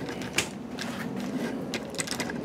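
Handling noise of a camera being lowered and re-aimed: a few small clicks and knocks over a low background, the sharpest about half a second in and fainter ones near the end.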